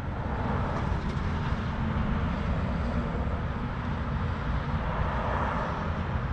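Steady outdoor rumble of distant engine noise, with low buffeting on the microphone.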